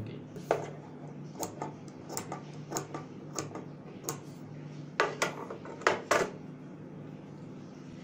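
Scissors snipping small clips into the seam allowance of cloth around a curve: about a dozen short, crisp snips at uneven intervals, the loudest around five and six seconds in.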